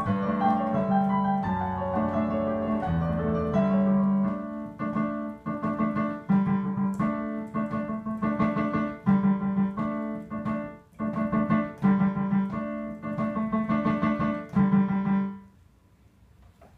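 Solo digital piano playing the closing bars of a pop song arrangement: held low chords under a higher melody, then a run of separately struck chords. The last chord fades out about half a second before the end, finishing the piece.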